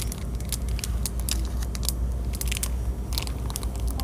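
Plastic packet of glue sticks crinkling and crackling in a hand, in scattered short crackles, over a low steady rumble.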